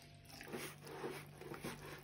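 Faint, irregular sounds of a soft dough mixture (flour, eggs, butter, sour cream and warm milk) being stirred and kneaded by spoon and hand in a bowl.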